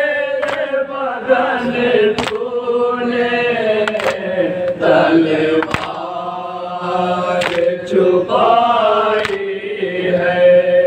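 A group of men chanting a noha, a Shia mourning elegy, in unison on long held notes. Sharp slaps of matam, hands striking the chest together, land about every one and three-quarter seconds in time with the chant.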